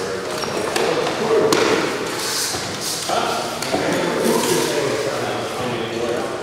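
Indistinct voices talking in a reverberant, hard-walled room, with a few sharp knocks.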